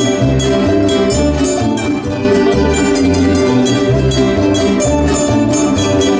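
Plucked-string ensemble of small mandolin-type instruments and guitars playing an instrumental passage, over a bass line that moves in notes about half a second long.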